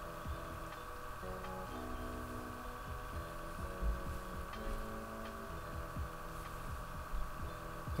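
Xbox One S startup sound: soft, sustained synth chords begin about a second in and shift several times before fading out around the middle, over a steady electrical hum.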